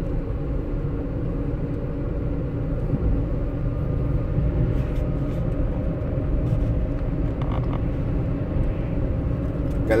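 Steady low rumble of a car driving along a road at speed, with engine and tyre noise heard from inside the cabin.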